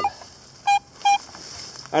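Metal detector giving two short, steady beeps about half a second apart as its search coil sweeps back and forth over a buried metal target: a solid, repeatable signal.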